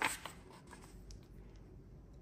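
A picture book's paper page being turned: a short papery swish at the start, then faint rustling as the pages are handled.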